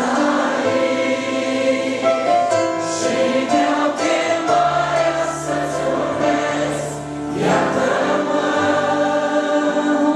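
A large congregation of men and women singing a Christian hymn together in Romanian, many voices blended like a choir.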